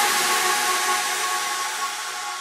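Electronic trance music fading out: a held synth chord under a hissing noise wash, growing steadily quieter.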